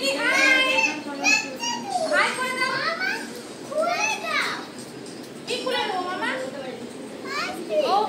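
Young children's voices at play, high-pitched calls and exclamations rising and falling in pitch, with no clear words.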